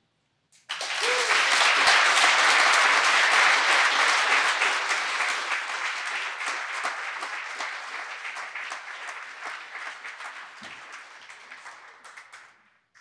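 Audience applauding. The clapping starts suddenly just under a second in, is fullest in the first few seconds, then slowly dies away.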